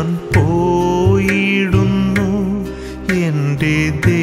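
Malayalam song: a voice sings drawn-out, wavering melodic lines over instrumental accompaniment with a steady bass and regular percussion strikes.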